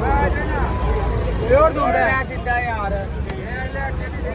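Men talking close by over background crowd babble, with a steady low rumble underneath.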